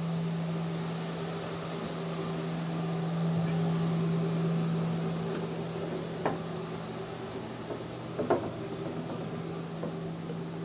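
Steady low hum from the pipe organ, a single held tone with a fainter higher tone above it, swelling slightly in the middle. Two light knocks come about six and eight seconds in, as a wooden ladder is climbed.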